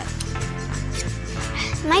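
Background music with steady held tones; a girl's voice starts near the end.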